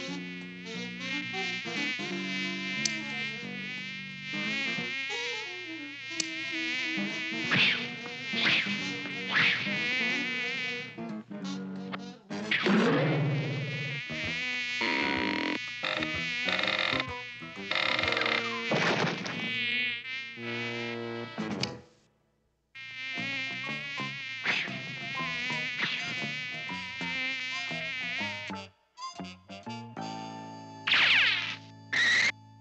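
Cartoon sound effect of a housefly buzzing: a wavering, pitch-wobbling drone that comes and goes. It is broken by several sharp whacks of swatting, stops briefly about two-thirds of the way through, then starts again.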